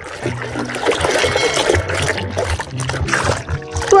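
A hand swishing and scrubbing a plastic toy in a tub of foamy water, with splashing and trickling, over background music.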